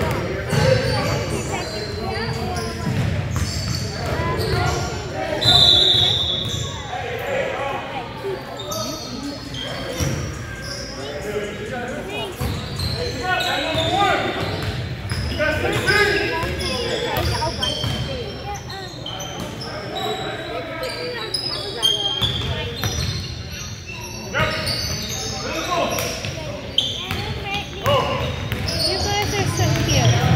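Basketball being dribbled on a hardwood gym floor during play, with short high sneaker squeaks and players and onlookers talking, all echoing in a large gymnasium.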